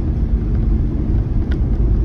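Steady engine and tyre rumble heard inside the cab of a kei light cargo van driving along a wet road.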